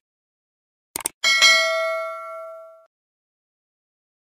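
A quick double click, then a bright bell ding that rings out and fades over about a second and a half: a subscribe-button click and notification-bell sound effect.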